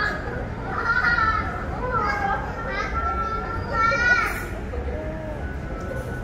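A young child's excited high-pitched squeals and vocalising, in several short bursts that rise to a loud squeal about four seconds in, over a steady low background hum.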